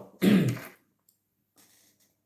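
A man clearing his throat once, a short rough burst about a fifth of a second in.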